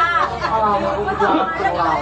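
Speech only: a performer's voice in continuous spoken stage dialogue.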